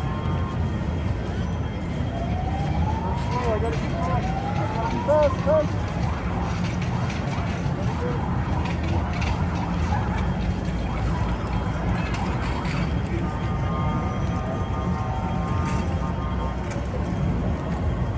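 Busy street-parade ambience: crowd chatter over a steady low rumble. About two to four seconds in there are two rising siren-like glides, followed by a few short chirps.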